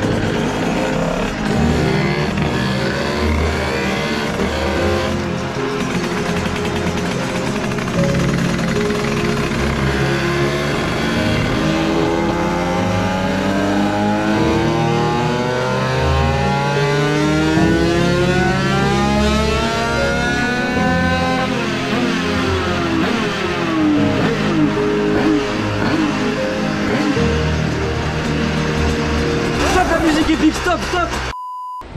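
Two-stroke Minarelli AM6 engine with a 100cc 2Fast kit running a full-throttle dyno pull: the engine note climbs steadily in pitch from about ten seconds in to a peak a little past twenty seconds, then drops away as the throttle closes. Dramatic music plays over it.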